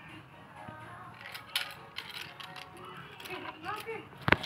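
Scattered light clicks and knocks of small plastic toys being handled and set down on a concrete block, under faint background music; a young child's voice sounds briefly near the end.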